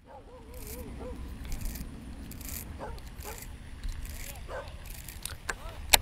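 A distant person calling out faintly a few times over a low rumble of wind on the microphone, with a few small clicks and rattles close by.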